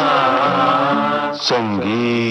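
Indian film-style vocal music: a singer holds a long, wavering note over accompaniment, then starts a new sung phrase about one and a half seconds in.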